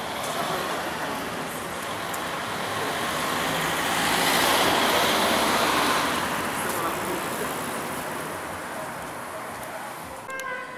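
City street traffic noise, swelling as a vehicle passes about halfway through and then fading.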